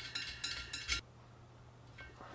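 Faint, quick metal clicks as the locking nut of a tubeless Schrader valve stem is spun by hand onto the stem's threads at the rim. The clicks stop about a second in.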